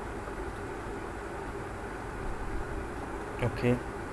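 Steady low background hum and hiss. A single spoken 'okay' comes near the end.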